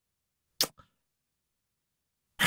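Silence broken by one short, sharp click about half a second in, followed at once by a fainter one.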